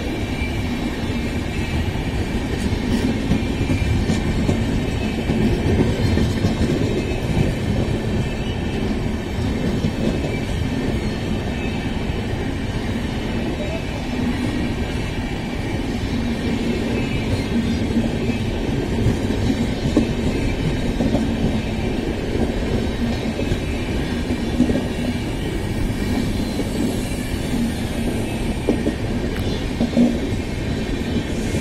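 Passenger coaches of an express train rolling past close by, a steady, continuous rumble of wheels on rail.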